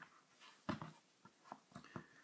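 Faint clicks and taps of hands fitting the felts back into a small alcohol camping stove: a short cluster of clicks about two-thirds of a second in and a few soft ticks near the end, otherwise very quiet.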